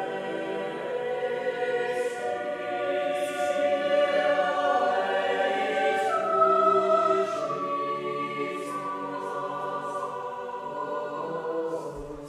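A choir singing held chords that move from one to the next every second or two, with soft hissing consonants, in a resonant stone chapel. The sound swells in the middle and eases off near the end.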